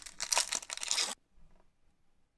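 A Pokémon TCG BREAKthrough booster pack's foil wrapper being torn open by hand: a rip of about a second that stops abruptly.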